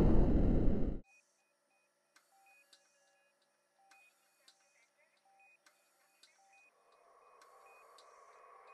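The tail of a loud intro sting fades and cuts off about a second in. It is followed by near silence with only a very faint run of short, evenly repeated beeps.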